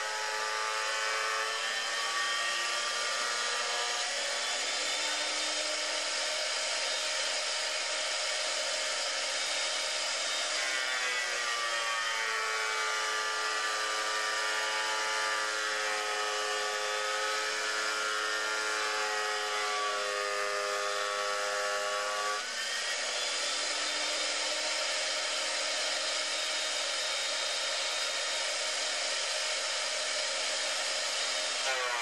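Benchtop thickness planer running with a steady motor whine and cutter noise as rough boards are fed through it to be surfaced. The pitch of the whine shifts for about ten seconds in the middle stretch, then settles back.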